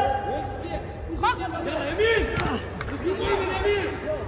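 Raised men's voices calling out and overlapping, the sound of ringside shouting during an amateur boxing bout.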